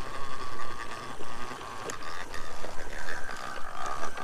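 Spyker walk-behind broadcast spreader being pushed across a lawn while it spreads granular humate, its gears and spinner giving a steady whine over faint ticking, a little louder near the end.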